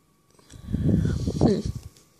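A person's drawn-out "hmm", lasting about a second and a half, a hum of doubt at a stamped nail-art image that has not transferred well.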